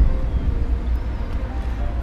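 Payphone dialling tone, a faint steady hum from the handset, over a steady low rumble.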